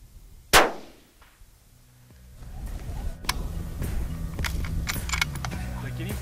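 A single rifle shot about half a second in, sharp, with a short trailing echo: the shot that hits the pronghorn buck hard.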